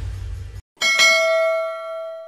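Subscribe-animation sound effects. A low rumbling whoosh cuts off just over half a second in, then after a brief click a single bright bell ding rings about a second in and fades slowly.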